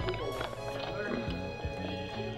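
Background music: a melody moving in steady held notes over low, regular beats.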